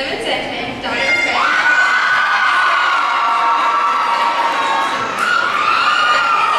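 Crowd of students in the bleachers cheering and screaming, with long high-pitched screams swelling up about a second in and held for several seconds.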